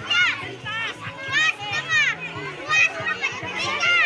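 A crowd of children shouting and calling out excitedly, high voices overlapping one another.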